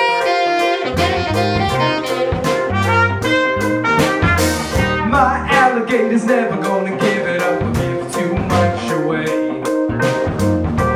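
Live band playing an instrumental passage: saxophone and trumpet over drum kit, electric guitar, bass guitar and keyboard, with a steady drum beat.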